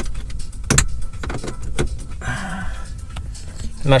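Handling noise from a camera being moved around: scattered knocks and clicks, with a short rustle about two seconds in.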